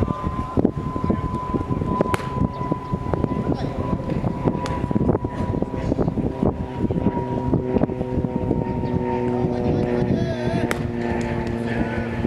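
Wind buffeting the microphone, with distant voices of players calling out across the field, some of them drawn-out calls in the second half. Two sharp knocks stand out, about two seconds in and near the end.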